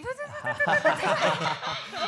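People laughing and chuckling, with voices overlapping.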